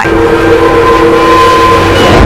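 News-channel logo intro sound effect: a loud rushing whoosh with a few steady held tones sounding together over it, which fade out near the end.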